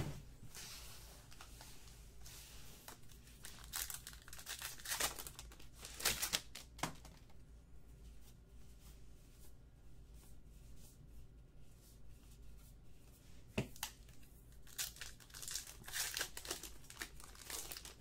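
Wrappers of Topps Archives baseball card packs crinkling and tearing open in faint short bursts near the start, a few seconds in and again near the end, with a quieter stretch in the middle while the cards are handled.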